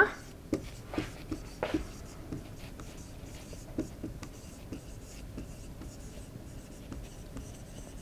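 Felt-tip marker writing on a whiteboard: short strokes and taps, closer together in the first two seconds, then a faint, steady scratching as the words are written.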